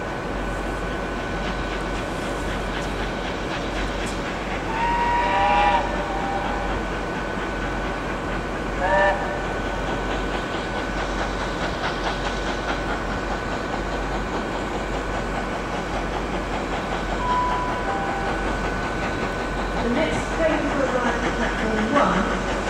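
BR Standard Class 7 'Britannia' Pacific steam locomotive approaching under steam with its train, a steady rumble of the engine and wheels on the rails. A whistle sounds in a blast of about a second some five seconds in and again briefly about nine seconds in.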